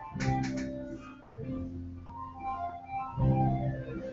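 Live band music in the background, held pitched notes playing steadily.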